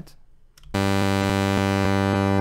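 Serum software synthesizer playing a sustained note from a homemade wavetable trimmed to its first 48 samples. It starts suddenly about three-quarters of a second in, rich in overtones, the highest of them fading over the next second.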